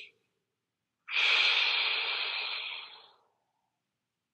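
A man's single long, forceful exhale, starting about a second in and fading away over about two seconds: breathing out after a hard, high-tension muscle hold.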